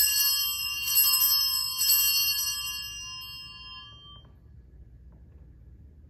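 Altar bell (sanctus bell) rung three times, about a second apart, with a clear high ringing that dies away over the next couple of seconds: the bell marking the elevation of the consecrated host.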